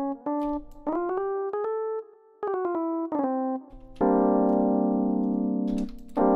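Software electric piano in Ableton Live sounding short single notes at changing pitches as MIDI notes are clicked and moved in the piano roll. About four seconds in, a fuller, louder chord is held until just before the end, building a G minor voicing.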